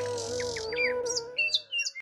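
Birds chirping in quick, short calls over soft background music with a sustained melody line; the music fades out near the end.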